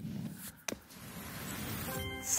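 A game-show transition sound effect: an even whoosh that swells in level over about a second, ushering in the scoreboard graphic, with a single sharp click just before it.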